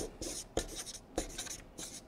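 Marker pen writing on a paper flip chart, a series of short separate strokes.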